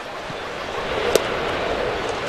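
Ballpark crowd noise with a single sharp pop about a second in: a pitched baseball smacking into the catcher's leather mitt.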